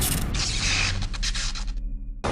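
Sound effects of a TV show's title sting: a loud noisy whoosh that breaks into a rattle of clicks over a low hum, then dies away near the end.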